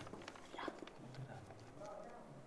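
Faint handling sounds of a large paper chart against a whiteboard: soft rustling with a few light taps and knocks.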